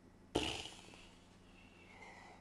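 A single short, sudden burst of noise about a third of a second in, fading away over about half a second, then faint room tone.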